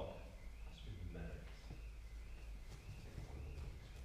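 Quiet hall ambience with faint murmured voices and a faint, high, wavering tone that rises and falls about twice a second.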